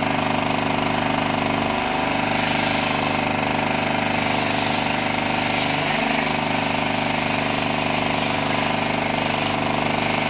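Electric sheep-shearing handpiece running with a steady, unbroken motor buzz as it clips the fleece off a sheep.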